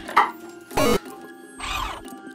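A short, loud electronic buzz from a key card reader as a card is swiped, over background music, with softer swishing effects before and after it.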